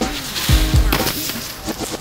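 Background music with a heavy bass beat, sharp percussive hits and a melodic voice line.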